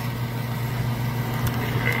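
Bench fan running: a steady low hum over an even, airy noise.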